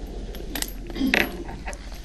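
A pause in a man's speech, filled with a steady low hum of room noise and a few faint small clicks and clinks.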